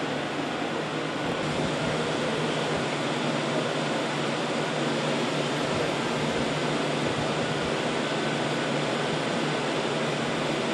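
Steady background hum and hiss of machinery, even throughout with no distinct sounds standing out.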